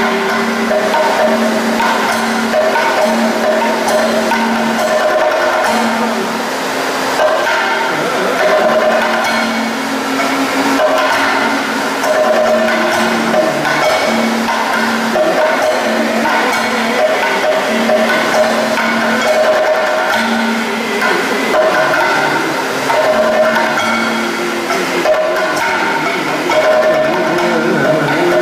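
Kathakali accompaniment music: a chenda drum beaten with a stick, with clacking strikes, over held ringing or sung tones that come in stretches of a second or two.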